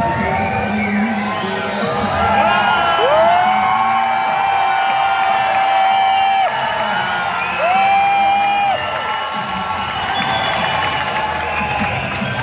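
Music over a public-address system with two long held notes, and an audience cheering and whooping.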